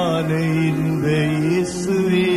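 A Tamil Christian Sunday school song being sung, the melody carried on long held notes that slide gently from one pitch to the next.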